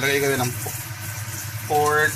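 Brief speech over a steady low hum and a faint even hiss.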